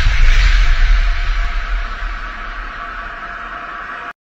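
Cinematic logo-intro sound design: the tail of a boom, a deep rumble and airy hiss dying away under a faint sustained tone, stopping suddenly at the end.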